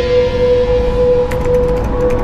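Synth drone soundtrack: one steady held tone over a deep low rumble. A little over a second in, a fast run of small digital ticks joins it, a text-typing sound effect for on-screen lettering.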